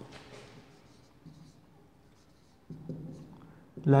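Marker pen writing on a whiteboard in faint, short scratchy strokes.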